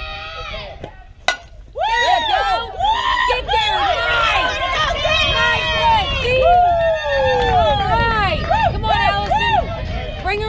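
A single sharp crack of a softball bat meeting the ball about a second in, then many spectators' voices shouting and cheering together.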